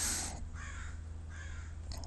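Faint bird calls, two of them about a second apart, over a steady low hum.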